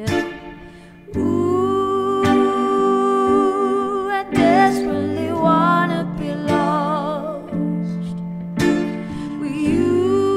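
Acoustic pop song played live on guitars and keyboard, with a woman singing. The music dips just after the start and comes back in full about a second in.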